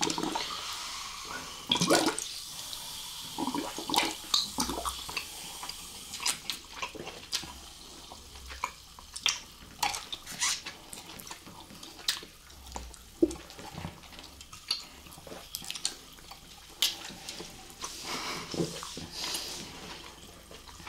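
Close-up sipping and slurping of fizzy canned drinks through licorice candy straws, with wet sucking noises and many small sharp mouth clicks. The louder slurps come at the start, about two seconds in, and near the end.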